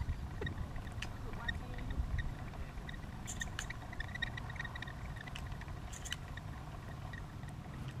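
A battery-powered spinning-wing dove decoy running, a faint steady whir with light irregular ticks, over a low wind rumble on the microphone.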